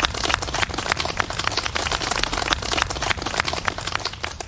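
A small group of people applauding, steady irregular hand claps.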